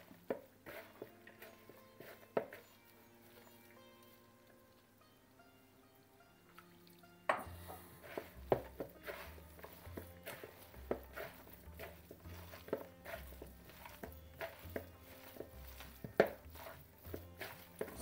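Background music with soft held notes; a beat with a low bass pulse comes in about seven seconds in. Under it are faint, quick squelches and taps from hands mixing a moist gram-flour vegetable mixture in a bowl.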